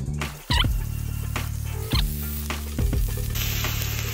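Background music with steady bass notes and a few sharp hits. Near the end, a rising hiss of raw ground beef beginning to sizzle on the hot flattop griddle.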